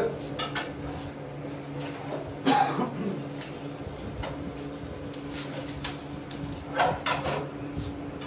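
Light kitchen clatter: a few soft knocks and clinks of things being handled on a worktop, over a steady low hum.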